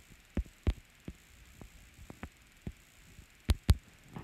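A stylus tapping and writing on a tablet's glass screen: a series of soft separate taps, ending with two louder taps close together near the end.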